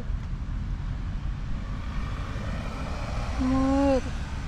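A domestic cat gives one short, level meow near the end, the loudest sound here, over a steady low rumble.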